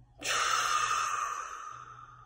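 A long exhale blown out through pursed lips, starting suddenly a moment in and fading away near the end. It is the out-breath that releases a held breath after a four-stroke inhale in a yogic breathing round.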